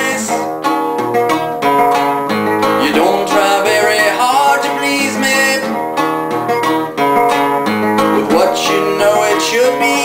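Nylon-string classical guitar picked with a plectrum, playing a repeating riff of plucked notes and chords.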